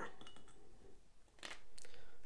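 A few faint clicks near the end as small cardboard game counters are picked up and handled on a board-game map.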